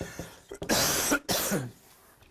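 Two coughs in quick succession, the first starting about half a second in.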